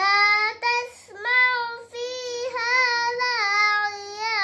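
A young girl chanting Qur'an recitation in a melodic style, holding long notes with gently wavering pitch. There are short breaks for breath before and just after the first second.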